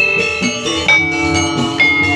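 Javanese gamelan music for a jathilan dance: bronze metallophones struck with a loud ringing stroke about once a second over lower sustained notes.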